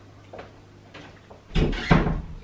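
A serving spoon scraping and clicking against a mixing bowl as food is spooned out. There are a few faint clicks, then two louder knocks close together about a second and a half in.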